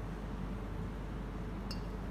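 Quiet room tone with a steady low hum, and one faint light click near the end.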